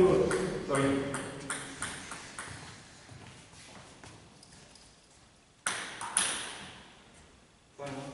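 Table tennis ball ticking in a quick run of fading bounces, then two sharp pings about half a second apart as the ball is struck back and forth, each with a reverberant tail in a large hall.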